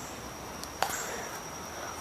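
Steady high-pitched insect chorus, with a single sharp click a little under a second in.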